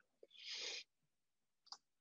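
A faint breath drawn in by the speaker, about half a second long, with a small click near the end.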